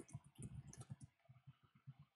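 Faint typing on a computer keyboard: many quick, irregular keystrokes as random keys are struck to fill a text box with placeholder text.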